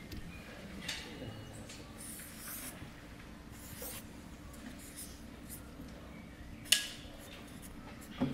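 Felt-tip marker drawing on flip-chart paper: a few soft, short rubbing strokes as small circles are drawn, with one brief sharp click about two-thirds of the way through.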